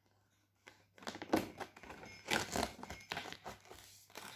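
Cardboard advent-calendar door being torn open along its perforations and the compartment handled: a run of irregular rips, crackles and rustles starting about a second in.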